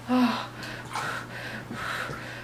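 A woman in labor, in the pushing stage of birth, gives a short loud moan that falls in pitch, followed by several heavy breaths.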